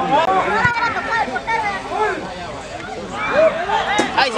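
Spectators' voices overlapping: several people talking and calling out at once, loudest near the end with a lull a little past halfway.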